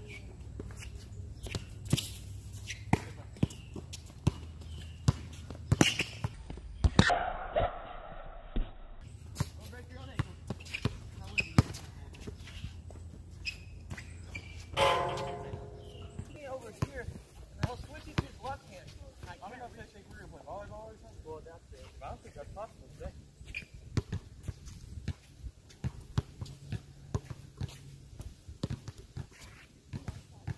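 Basketball bouncing and being dribbled on an outdoor asphalt court, heard as sharp, irregular thuds, with players' footsteps in between. A ringing clang sounds about fifteen seconds in.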